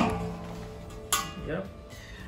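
A stainless-steel boiler lid set down on the stainless rim of a 120 L boiler with a metallic clank that rings on briefly, then a second clank about a second later as the lid is shifted on the rim.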